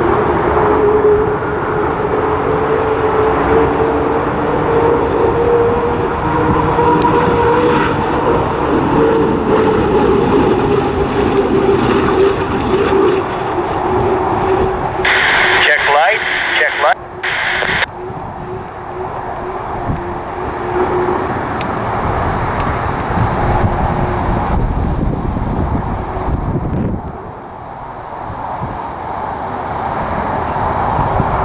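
Unlimited hydroplane's Lycoming T55 gas-turbine engine running at speed, a steady howl whose pitch drifts a little as the boat passes. The sound changes abruptly about halfway through.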